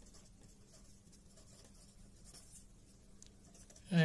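Faint scratching of a pen writing a word by hand on paper.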